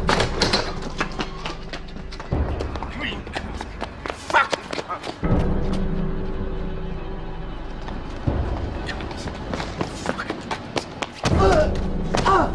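Dramatic film score with steady bass notes, over a run of sharp thuds and knocks, with short shouted voices now and then, strongest near the end.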